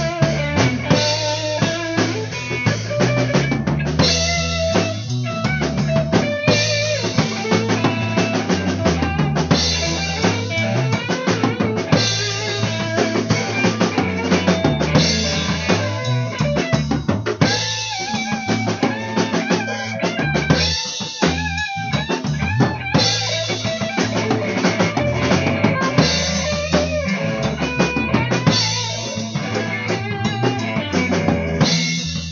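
Instrumental passage of a rock song: a full drum kit with kick and snare keeps a steady beat under a bass line and melody instruments.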